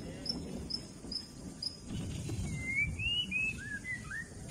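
Birds calling: a short high chirp repeated about twice a second, then a run of whistled notes that rise and fall near the end, over a low rumble.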